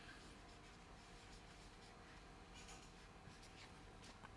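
Faint squeaks and scratches of a felt-tip marker writing on a whiteboard, a few short strokes mostly in the second half, over near-silent room tone.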